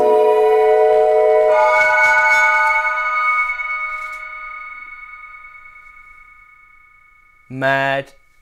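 Teenage Engineering OP-1 playing sustained chords of a sampled sung voice through its spring reverb effect: the chord changes about a second and a half in, is held, then fades away slowly over several seconds. A brief spoken word comes in just before the end.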